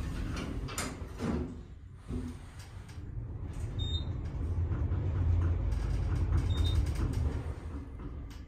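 Original 1970s Otis traction elevator: its doors finish sliding shut with a couple of knocks, then the car sets off and travels with a low rumble that builds through the second half. Two short high beeps sound in the middle.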